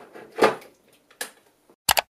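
A stainless-steel electric kettle set down on its base with a sharp clunk about half a second in, then a faint click, and a short, sharp double knock near the end.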